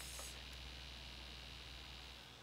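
Faint, steady low buzz of a PMD silicone facial cleansing brush vibrating, which stops about two seconds in. A short hiss comes right at the start.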